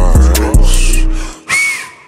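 Slowed-down hip-hop beat with heavy bass and regular drum hits, fading out about a second and a half in. A short, high whistle-like sound that rises and falls in pitch follows near the end.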